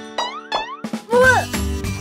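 Cartoon background music with two quick rising boing sound effects, followed about a second in by a short wordless vocal sound from a cartoon character that rises and falls in pitch.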